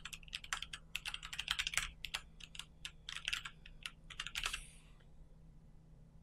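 Computer keyboard being typed on: a quick run of keystrokes that stops about four and a half seconds in.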